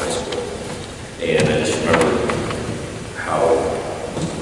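A man's voice speaking, with pauses, in a large gym hall.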